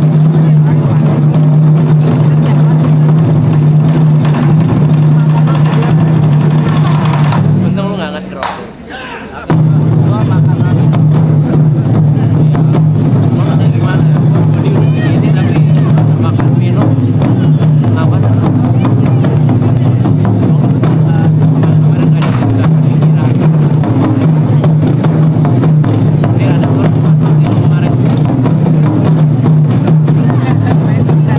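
Taiko drum ensemble playing loudly. About eight seconds in the drumming drops away briefly, then comes back in suddenly at full force a second and a half later.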